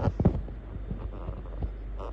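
A steady low electrical hum with a few faint scattered clicks and thumps.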